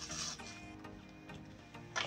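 Background music with a light ticking beat, over the soft clatter of sliced cucumbers being gathered by hand off a plastic cutting board, with a sharp click near the end as slices go onto the plate.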